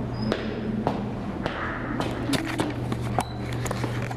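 Footsteps climbing stone stairs: irregular short knocks and scuffs, with a steady low hum underneath.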